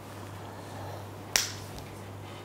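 A single sharp click about a second and a half in, over a low steady hum.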